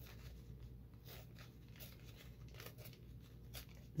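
Folded paper coffee filter being torn slowly by hand: faint, irregular crackles and rustles of the thin paper.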